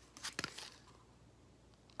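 A few short clicks and rustles from a plastic emergency flashlight and its card tag being handled, in the first half second, then quiet room tone.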